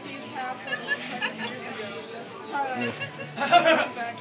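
Chatter of several people talking, with a short louder burst of sound near the end.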